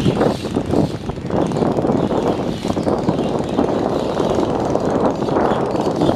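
Steady engine drone of the passenger river launch MV Mitali-5 passing close by, mixed with a noisy rush.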